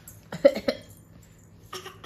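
A toddler giving short put-on coughs: a quick run of three or four about half a second in, then another pair near the end, the little one imitating a cough.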